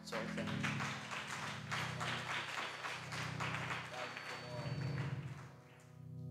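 Congregation applauding, with a keyboard holding low sustained chords underneath; the clapping dies away near the end.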